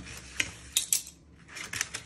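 Metal spoons and a fork clinking together as they are handled: a few short, sharp clinks spread through the two seconds.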